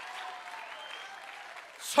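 An audience applauding, the clapping slowly dying away, then a man starting to speak just before the end.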